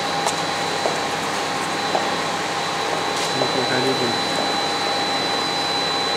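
Steady machine noise: an even whir with a constant high-pitched whine running through it, with faint voices underneath around the middle.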